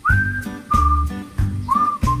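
A whistled tune of three short notes: the first slides up, the second is held level, and the third rises near the end. Under it runs a children's backing track with a steady bass beat.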